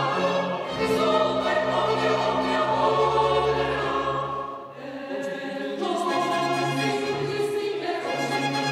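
Mixed choir singing a sacred choral piece in sustained chords, accompanied by chamber organ and strings, with a brief break between phrases a little past halfway.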